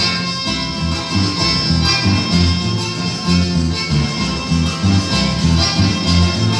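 Instrumental Latin folk music: an accordion melody over plucked guitar and a bass line that changes note about twice a second, in a steady dance rhythm.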